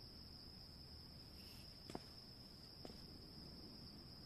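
Faint steady chirring of crickets, with two soft clicks about a second apart midway through.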